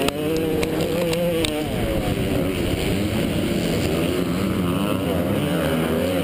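Yamaha YZ250 two-stroke motocross engine running hard under the rider, its pitch rising and falling with the throttle, picked up by a helmet-mounted camera. A few sharp ticks come in the first second and a half.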